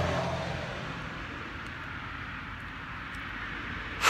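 A vehicle's engine and road noise fading away over the first second or so, leaving a steady faint background rumble.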